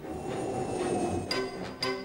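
A train rushing past, a dense rumble with a thin high tone above it, lasting about the first second; then orchestral music cuts in with sharp rhythmic hits about two a second.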